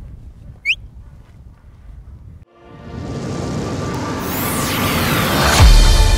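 Quiet outdoor field ambience with one short high falling chirp. About two and a half seconds in it cuts to an electronic logo sting: a rising whoosh with sweeping tones that builds to a deep boom near the end.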